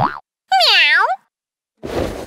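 A cartoon sound effect: a bright pitched tone that swoops down and back up again, lasting just over half a second, in the middle. A short noisy burst fades out right at the start, and another noisy sound begins just before the end.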